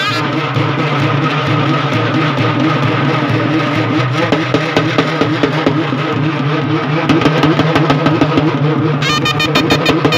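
Loud festival procession music: a steady low drone with rapid drum strokes that get busier and louder about halfway through.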